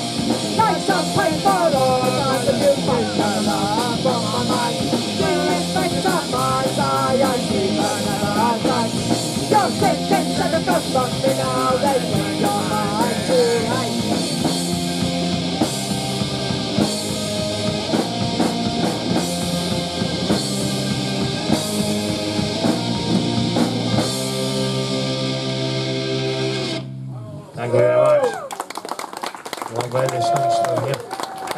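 Punk rock band playing live: distorted electric guitars, bass and drum kit under sung vocals for roughly the first half, then an instrumental passage. The song ends on a held chord that stops abruptly about 27 seconds in, followed by a voice over the PA.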